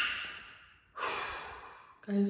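A woman's breathy sighs: one at the start that fades out, then a second drawn-out breath about a second in.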